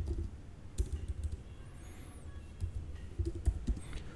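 Computer keyboard keys clicking in short, irregular runs of typing.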